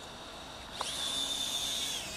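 Small toy quadcopter's electric motors and propellers spinning up about a second in, a rising whine that settles into a steady high-pitched whine as the drone lifts off.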